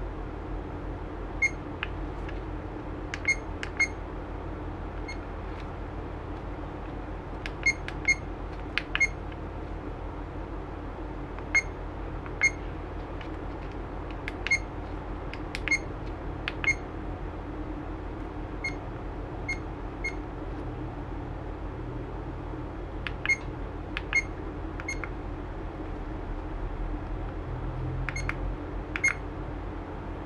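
Action camera button beeps as the on-screen menus are stepped through: a series of short, high, identical beeps at irregular intervals, often in quick pairs or threes, some with a faint button click. A steady low hum runs underneath.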